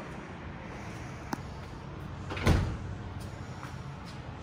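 A dishwasher drawer is pushed shut by hand: a light click just over a second in, then a single thump as it closes about two and a half seconds in.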